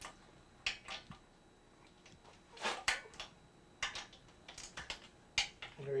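Sharp metallic clicks of a torque wrench on the cylinder-head nuts of an air-cooled VW Type 1 engine, coming singly and in short groups at uneven intervals as each nut is checked. The nuts are holding their torque.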